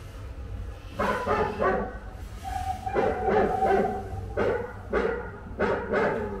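Recorded dog barking played back in a museum display: a run of barks starting about a second in, with a longer drawn-out sound in the middle, over a steady low rumble.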